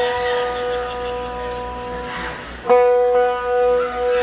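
A single guitar note rings and slowly fades, then the same note is plucked again about two-thirds of the way through, as in tuning up before a set.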